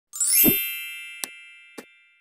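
Logo sting sound effect: a bright, many-toned chime that sweeps up and is struck with a low thump about half a second in, then rings and slowly fades. Two short clicks sound over the fading ring, one about a second in and one near the end.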